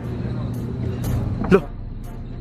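Steady outdoor background rumble with a low steady hum, and one short spoken syllable about one and a half seconds in.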